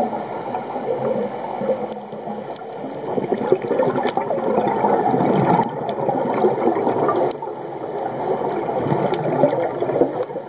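Underwater recording of a scuba diver's regulator exhaust: bubbling, gurgling noise that surges and eases every few seconds with the diver's breathing, with a few sharp clicks over it.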